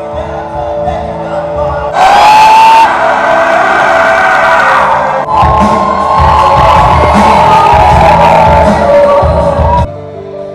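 Loud live rock band music over a PA system: electric guitars, bass, drums and a singer, with a crowd cheering. The music changes abruptly about two seconds in and again about five seconds in, with a steady drum beat in the second half.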